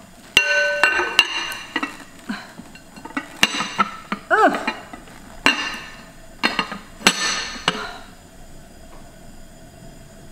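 Glass pot lid clinking and knocking against the rim of a glass cooking pot packed with collard green leaves, several ringing clinks in the first two seconds and single knocks after, with a brief squeak about halfway through. It goes quiet for the last couple of seconds.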